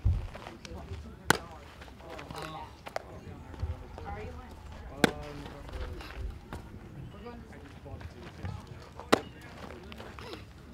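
A baseball smacking into a catcher's leather mitt three times, about four seconds apart, each a sharp pop as the catcher receives a pitch before throwing down to a base.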